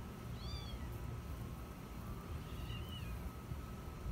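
Young kitten mewing twice, two short high-pitched mews about two seconds apart.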